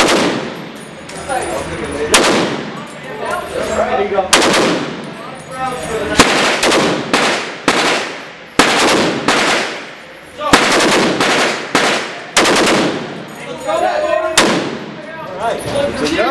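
Browning Model 1919 machine gun, adapted to fire .308, shooting a string of short bursts and single shots. The shots are about two seconds apart at first and come closer together in the middle. Each one echoes in the enclosed indoor range.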